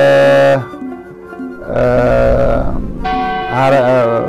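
A man chanting a hymn in long held notes whose pitch wavers, in three phrases with short breaks between them.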